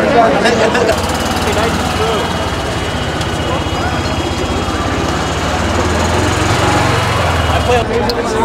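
A steady low mechanical rumble, engine-like and pulsing, starts about a second in and runs on under people talking.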